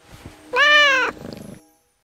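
A cat's meow, one call about half a second long that rises slightly and then falls, over a faint held tone. A short, rapidly fluttering sound follows and fades out.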